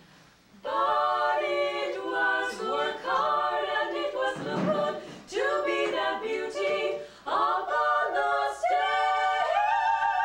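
Unaccompanied voices singing an original a cappella score written for three voices, in short phrases with brief breaks, starting after a moment of quiet and settling into a long held chord near the end.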